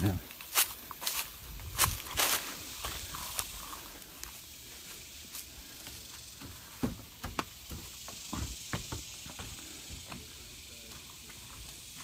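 Footsteps of someone walking outdoors over dry leaves and a path, then onto a wooden deck, at an uneven pace: sharp steps in the first three seconds, fainter scattered steps after.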